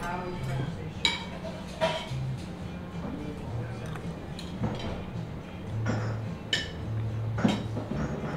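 Spoon and cutlery clinking against dishes a few times, over quiet background music with low bass notes.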